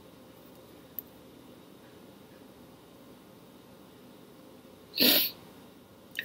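Quiet room tone, then about five seconds in a single short, sharp burst of breath from a person's mouth.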